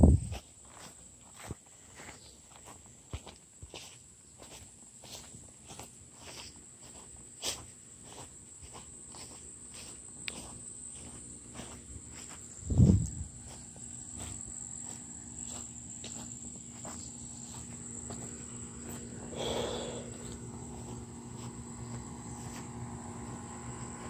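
Footsteps through grass at a walking pace, over a steady high-pitched drone of insects. A single low thump about halfway through is the loudest sound.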